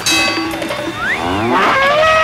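Cartoon sound-effect cow moo: a pitched call that swoops up and down, then holds steady near the end.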